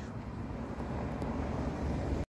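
Low, uneven rumble of wind buffeting a phone microphone, growing stronger near the end.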